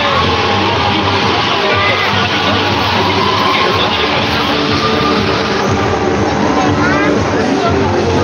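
Music over the arena's PA system playing over the chatter of a large basketball crowd, loud and steady throughout.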